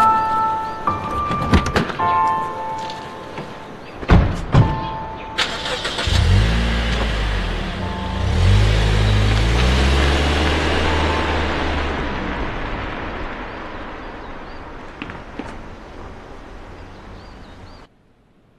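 A Toyota people-carrier: two sharp thumps about four seconds in, then about six seconds in the engine starts and revs with a rising pitch as the car pulls away, its sound slowly fading as it drives off. Music plays over the first few seconds.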